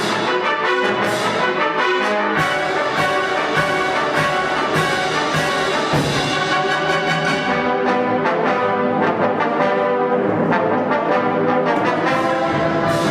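Full wind orchestra (concert band) playing, with brass to the fore and frequent sharp accents.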